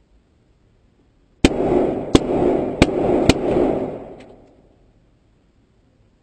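A burst of gunfire hitting a bulletproof car's side window, heard from inside the cabin. It starts suddenly about a second and a half in: four sharp cracks over about two seconds amid continuous rattling noise, then it fades out over the next second or so.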